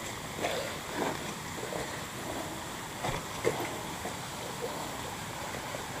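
Steady rush of waterfall and stream water, with a few faint footfalls on the rocky trail.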